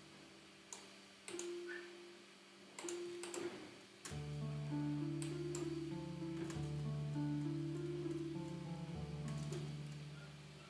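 A software harp melody playing back from an FL Studio piano roll, plucked notes stepping over held low notes. For the first few seconds it plays only in snatches, with sharp clicks. From about four seconds in it plays through fully.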